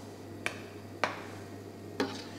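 Two sharp clinks of a metal kitchen utensil against cookware, about half a second apart, over a steady low hum.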